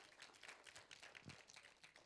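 Near silence: room tone with faint, irregular clicks and taps.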